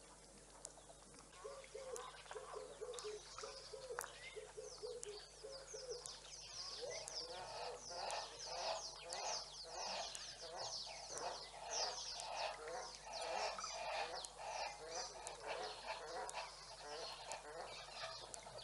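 A chorus of wild birds calling: first a short run of repeated, falling call notes, then from about six seconds a dense overlapping chatter of many quick, high, falling notes.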